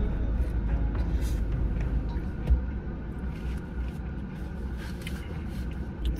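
Biting into a veggie burger and chewing it close to the microphone, with scattered soft crunches and smacks, over a steady low car rumble.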